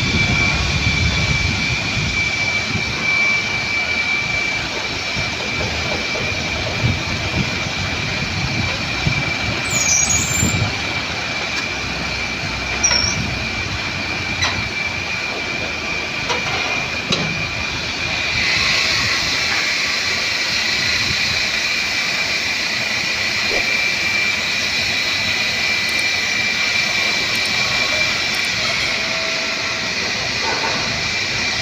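Escorts Hydra 10 pick-and-carry crane's diesel engine running steadily with a constant high whine over it, a few light knocks along the way, getting a little louder about two-thirds through.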